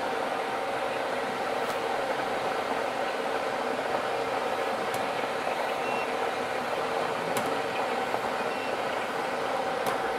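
Air-mix lottery ball machine running: a steady blower whir with a constant hum, and the plastic balls tumbling in the clear globe. A few faint clicks stand out.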